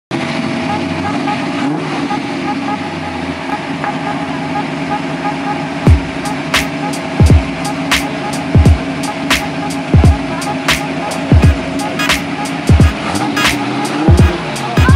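Steady running of a V8 engine swapped into a Ford Focus, overlaid from about six seconds in by background music with a regular kick-drum beat.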